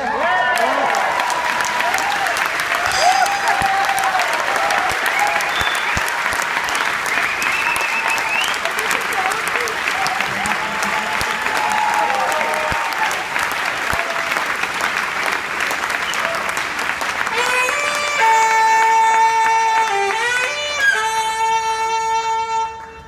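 Audience applauding and cheering. About 18 seconds in, a tenor saxophone comes in with long held notes.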